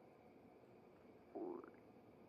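A person's stomach rumbling after a meal: one short, faint gurgle about a second and a half in, rising in pitch.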